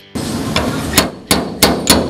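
Slide hammer dent puller striking its stop, four sharp metal clacks about three a second starting about a second in, pulling a dent out of a vehicle's wheel-arch panel by pins welded to the damaged metal.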